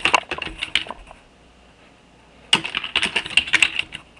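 Computer keyboard typing in two quick runs of keystrokes, with a pause of about a second and a half between them.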